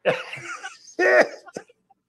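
A man laughing out loud: a breathy exhaled burst, then a short voiced 'ha' with falling pitch about a second in.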